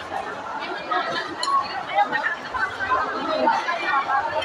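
Chatter of several voices in a busy café, with a light clink of cutlery about one and a half seconds in.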